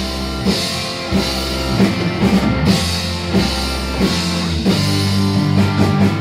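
Live rock band playing an instrumental passage between vocal lines: electric guitars and electric bass over a drum kit keeping a steady beat.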